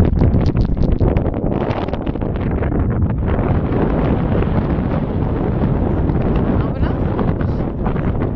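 Strong sea wind buffeting the microphone in gusts, a loud rumbling noise.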